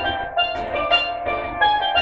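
A single steel pan played with sticks: a quick run of struck, ringing notes picking out a reggae melody. A low pulsing beat sits underneath.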